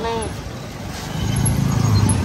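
Street traffic, with the engine of a motorcycle or scooter running close by and growing louder from about a second in.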